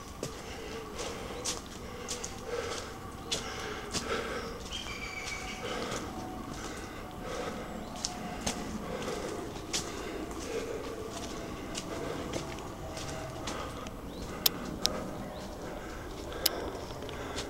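Footsteps walking along a woodland path strewn with dry leaves and twigs, about one step a second, with scattered sharp cracks of twigs and leaves underfoot.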